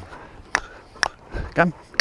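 A horse trotting, its strides heard as sharp, evenly spaced beats about two a second. A man says "come" near the end.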